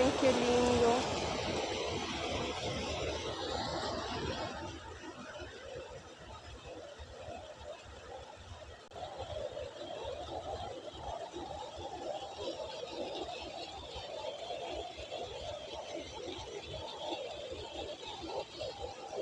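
Water pouring over a small concrete weir and splashing into the pool below, louder in the first four seconds and fainter after. Indistinct voices murmur in the background from about halfway.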